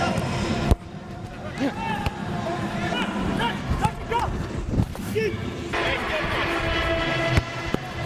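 Indoor soccer game sound picked up by a player's wireless body mic: scattered shouts and voices on the field, with a few sharp thumps, the loudest just under a second in. Music comes in over the last couple of seconds, with a laugh near the end.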